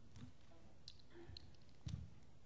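Faint handling noise at a table: a few small clicks, then a louder thump near the end.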